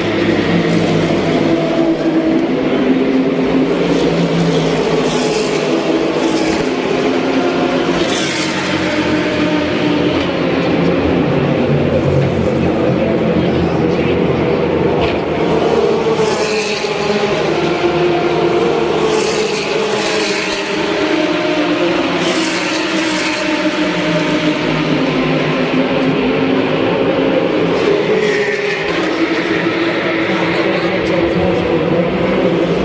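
Race car engines on the circuit, running continuously, their pitch rising and falling several times as cars pass along the straight.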